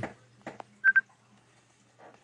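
Two short, high electronic beeps in quick succession about a second in, over a faint steady hum.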